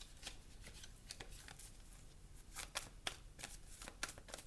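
A deck of tarot cards being shuffled by hand: a quiet run of irregular card riffles and slaps, with a couple of louder snaps a little past halfway.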